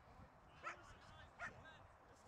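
Two brief, faint calls at a distance over near-silent field ambience, one a little over half a second in and another about a second and a half in.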